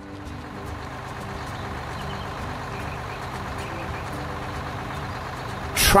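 Steady engine running on a cartoon tractor with a front loader as it drives along.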